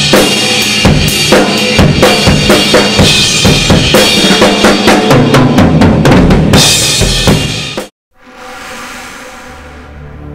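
Full rock drum kit played hard and fast, with dense bass drum and snare strokes under ringing cymbals. It cuts off suddenly near the end, and soft ambient music swells in after it.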